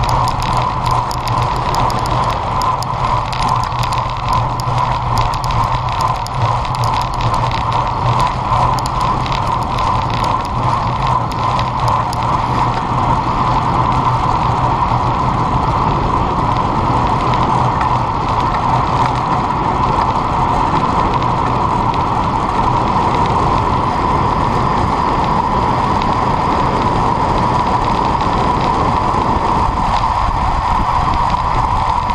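Steady rush of wind and road noise on an action camera's microphone on a road bike ridden at speed, with light mechanical ticking from the bicycle in the first half.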